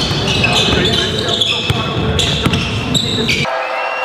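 Basketball being bounced on a gym floor amid voices and court noise, with several sharp thuds. The sound starts abruptly and cuts off suddenly a little after three seconds in.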